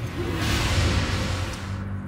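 A game-show transition sting: a whoosh over a short burst of music, starting about half a second in and fading just before the end.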